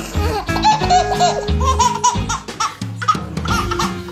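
A baby laughing in a string of short, repeated laughs over background music.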